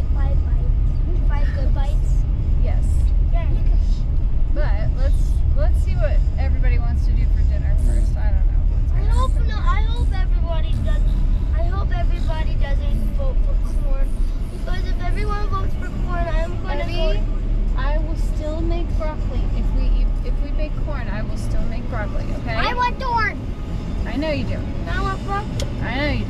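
Steady low road rumble of a moving car heard from inside the cabin, with people talking over it throughout.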